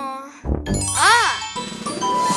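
Cartoon sound effects: a falling pitched glide, a soft thump about half a second in, a pitched sound that rises and falls around a second in, then a ringing chime near the end.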